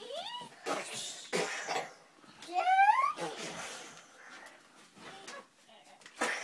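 A child's voice making play-fight noises: a short rising cry near the start, then breathy, cough-like rasping growls, then a louder rising squeal about two and a half seconds in. Fainter scraps of the same noises follow.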